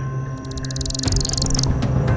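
Dark background music with a steady low drone. About half a second in comes a rapid, high-pitched buzz of clicks lasting just over a second, a bat's echolocation calls run together as it closes on prey.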